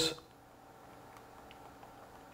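Quiet room tone with one or two faint ticks from the menu joystick of a JVC GY-LS300 camcorder being pressed.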